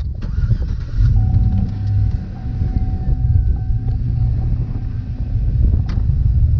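Pickup truck driving, heard from inside the cab: a steady low rumble of engine and road noise. A faint thin whine rides over it from about a second in until near the end.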